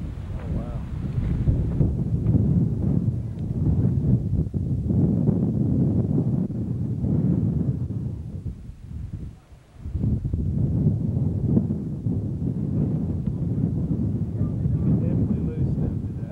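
Wind buffeting the camcorder microphone: a loud, gusting rumble that drops away briefly about nine seconds in.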